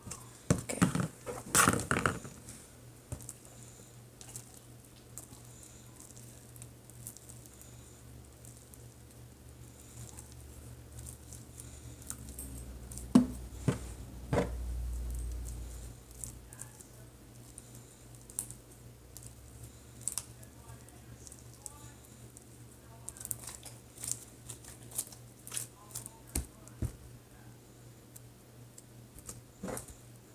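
Homemade slime being worked and stretched by hand, with scattered small sticky clicks and squelches. Near the start there is a louder run of knocks and clatter as the slime is tipped out of a plastic cup. A couple of sharp knocks come about halfway through.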